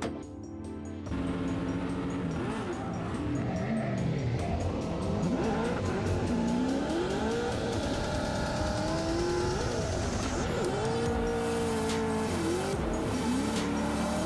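Drift car engines revving hard, their pitch rising and falling with the throttle through the slides, with tyre squeal, over background music. The engine sound starts about a second in.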